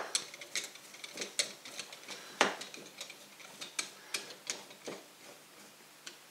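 Screwdriver turning a screw into the end cap of a large stepper motor: irregular sharp metal clicks, about three a second, the loudest about two and a half seconds in.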